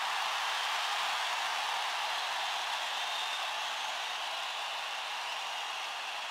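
A steady, even hiss of noise with nothing standing out from it.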